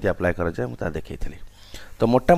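A man speaking, trailing off into a short pause about a second in.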